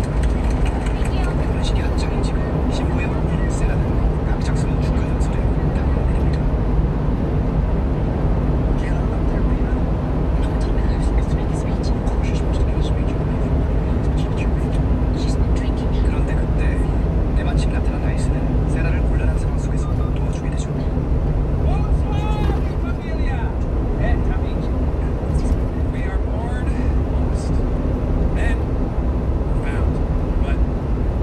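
Steady low road and engine rumble inside a 1-ton refrigerated box truck cruising at highway speed through a tunnel, with scattered small clicks and rattles.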